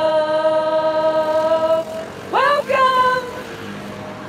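A woman singing unaccompanied into a handheld karaoke microphone: a long held note that ends just under two seconds in, then a short phrase that swoops up in pitch.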